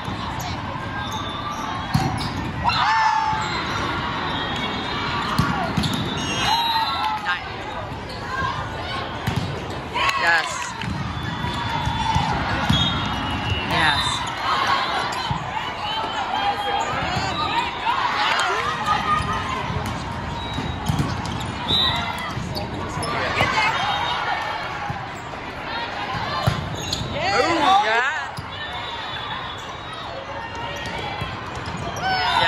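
Indoor volleyball play in a large, echoing hall: repeated sharp thuds of hands striking the ball and the ball hitting the floor. Players call and shout over a steady bed of chatter from the surrounding courts.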